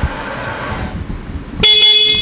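Order picker's electric warning horn sounding one steady, even-pitched blast about a second and a half in, warning people below before the platform is lowered.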